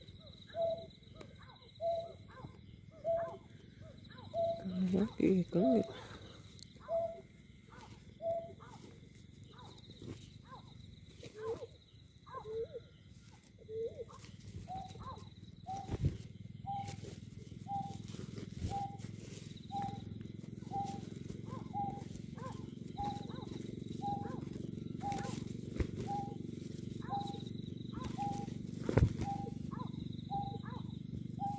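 Recorded white-breasted waterhen call played from an electronic bird-call lure: a short note repeated evenly about every two-thirds of a second without a break. A brief lower cry about five seconds in, and a few sharp clicks from handling the net.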